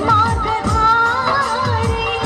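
A Mappila song sung by a woman over instrumental backing, with a steady drum beat whose hits drop in pitch.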